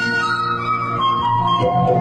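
Bamboo flute playing a song melody in held notes that step downward, over tabla accompaniment.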